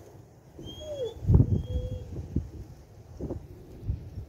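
Birds calling: a low, curving call about a second in, and thin high chirps. Several low thumps, the loudest about a second and a half in.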